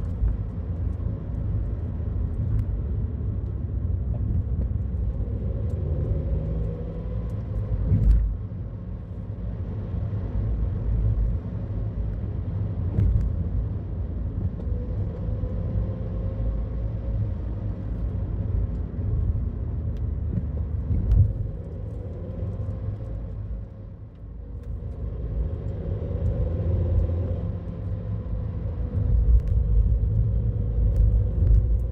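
Car driving on a narrow, uneven asphalt road, heard from inside the cabin: a steady low engine and tyre rumble with a faint hum that rises and falls. There is a thump about eight seconds in and another about twenty-one seconds in, likely from bumps in the road.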